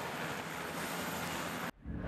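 Steady rushing racetrack ambience with a winning Supercar's burnout audible through it. The sound cuts off abruptly near the end.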